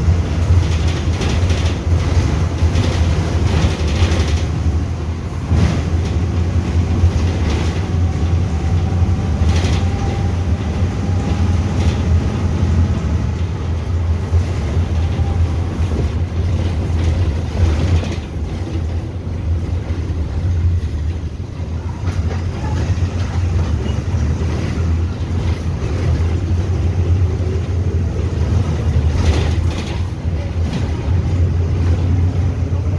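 Inside a Volkswagen 17-230 EOD city bus under way: the engine's steady low drone, with frequent knocks and rattles from the body over the road. The sound drops a little for a few seconds past the middle, then picks up again.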